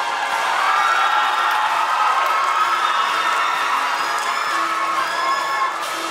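Marching band's brass section playing loud, long held chords that swell up at the start and ease off near the end.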